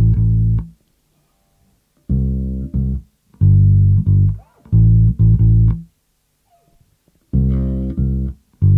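Electric bass guitar played slowly, fingerstyle: clean low single notes of a simple chorus pattern (A, C and G on the E and A strings), in short groups of one or two notes with pauses of about a second between.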